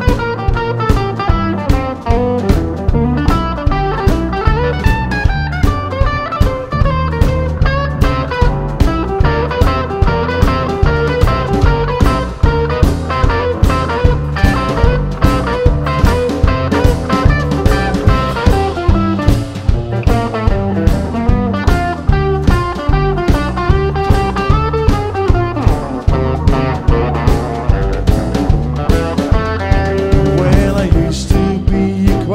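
Live blues band playing an instrumental break without vocals: electric guitar and keyboards over drums and upright bass, keeping a steady beat.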